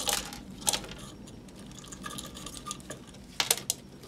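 Pieces of kiwi bark and expanded clay pebbles dropping into a plastic orchid pot and clicking against it and each other. They come in a few short rattling clusters, the loudest a little past three seconds in.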